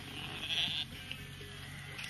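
A single short bleat from the flock of sheep and goats, about half a second in, over a faint steady low hum.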